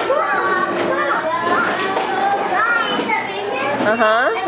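A group of children talking and calling out all at once: a steady, overlapping chatter of high voices with no single speaker standing out.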